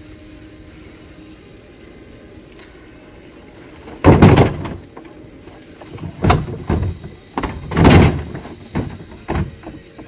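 A flat-screen LCD TV dropped into a plastic wheeled trash bin with a loud crash about four seconds in, then a run of knocks and thumps as it is shoved down inside and the bin lid is banged shut, the loudest thump near the end.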